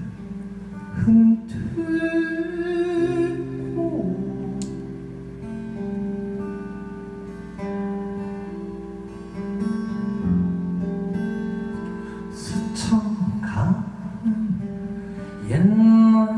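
A live band playing an instrumental passage without sung lyrics: plucked and strummed guitars ringing over held bass notes.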